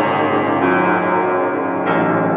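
Vintage 1910 upright piano played: low, full chords ring out and sustain, with a new chord struck near the end.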